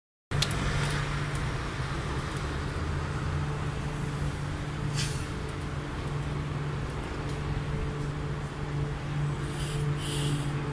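Formation of military helicopters flying over in the distance, their rotors making a steady low drone, with a few brief clicks.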